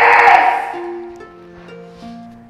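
A man's loud, excited yell of triumph that dies away about a second in. Background music of steady held notes runs under it and carries on alone.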